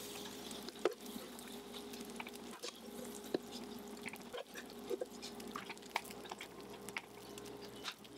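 Wooden spoon scraping and knocking against a frying pan as hot tofu and vegetable scramble is pushed out into a pie crust, with scattered small clicks and crackles from the hot food. A steady low hum runs underneath.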